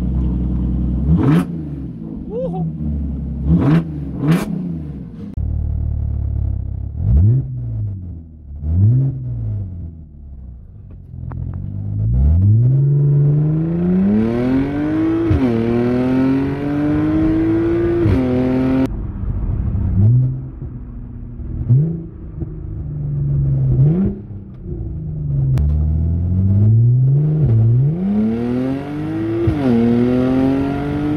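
Audi S5's 3.0 TFSI supercharged V6 through a homemade custom exhaust, revved in a series of short blips, then pulling hard under acceleration with rising revs, a drop at a gear change and another climb. More blips and a fresh climb in revs come near the end.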